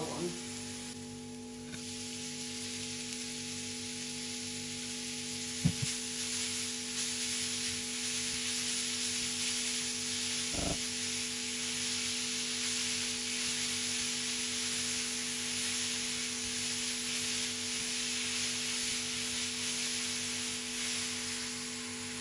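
Grated zucchini frying in olive oil in a frying pan, stirred with a silicone spatula: a steady sizzle that drops off briefly about a second in as the cool zucchini goes in, then builds and holds. Two short knocks sound partway through.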